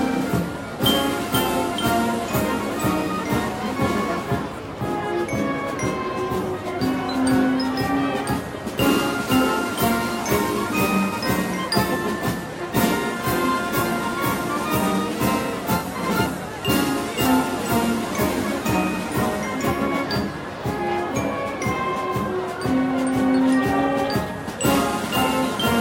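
Band music with brass and a steady percussion beat, playing throughout.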